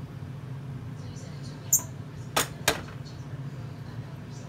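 Three sharp knocks, the last two close together, as a candy apple is turned in a stainless steel pot of hot sugar syrup and strikes the pot, over a steady low hum.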